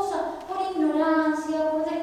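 A high-pitched voice singing slow, long-held notes.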